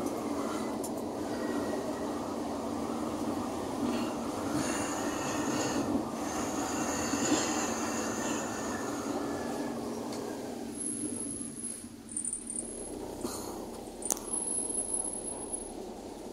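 Running noise heard from inside a moving vehicle's cabin: engine and road noise as a steady rush that eases off after about ten seconds, with a few clicks and rattles near the end.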